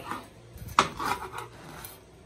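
A long knife sawing through the crisp crust of a baked focaccia on a wooden cutting board, with rasping strokes and a sharp knock a little under a second in.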